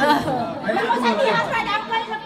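Several women chatting at once, their voices overlapping in casual conversation.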